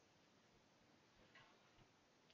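Near silence: room tone, with a couple of faint ticks about a second and a half in.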